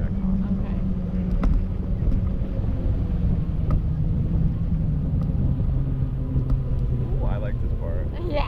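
Parasail tow boat's engine running under way, a steady low drone whose pitch slowly sinks over the few seconds.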